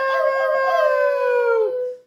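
A long, drawn-out dog-like howl, like a dog crying, holding one pitch and sinking slightly before it cuts off near the end.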